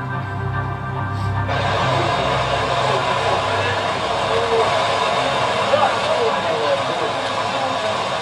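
Soundtrack of a mission documentary video played over a lecture hall's speakers: music for about the first second and a half, then a steady rushing noise with faint voices under it.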